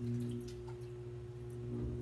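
Electric potter's wheel running, its motor giving a steady low hum, with a few faint ticks.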